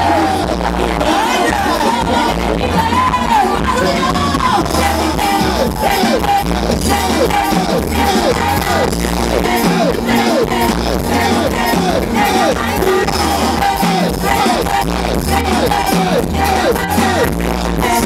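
Live band music played loud through a PA, with a heavy pulsing bass beat and short falling pitch slides repeating over it.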